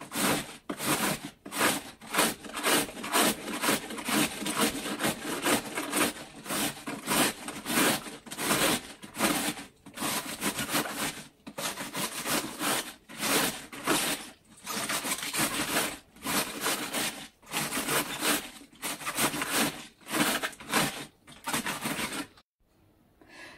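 Hand-held multi-blade cabbage shredder scraping across the cut face of a whole white cabbage head, shaving off fine shreds in a steady rhythm of strokes, about two to three a second.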